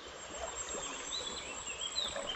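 Steady rush of a shallow stream, with a few faint, high bird chirps in the second half.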